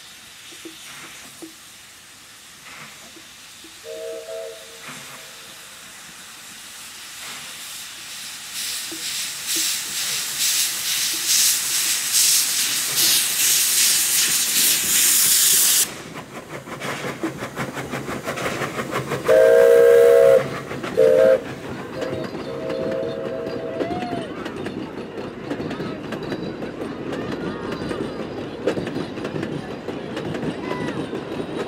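Steam whistle of the NGG16 Garratt steam locomotive No. 129 giving a short chord-like blast about 4 seconds in. The locomotive then works closer with a rising hiss of steam and rapid exhaust beats, which cuts off abruptly about 16 seconds in. A loud whistle blast about 20 seconds in is followed by two shorter toots, over the rumble and rail clatter of the passing train.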